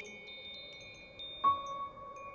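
Sparse, soft chime-like notes of a music score. Earlier notes ring on, and a new single note is struck about one and a half seconds in and rings out.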